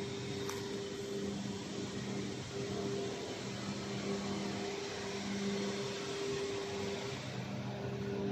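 Steady hum of factory machinery, electric motors or fans running, with an even low drone and a higher tone above it.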